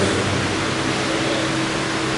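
Steady even hiss of electric fans and sound-system noise in a large hall, with a faint steady hum.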